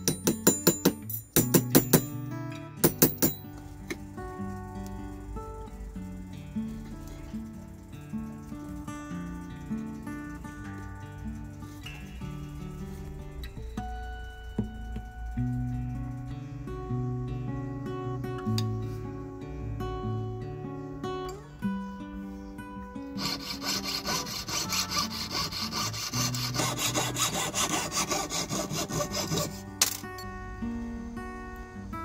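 A plastic-faced mallet knocking a silver strip flat on a steel bench block, several sharp strikes at the start. Background music runs throughout, and in the last several seconds a jeweller's saw cuts through the silver ring with quick, even strokes.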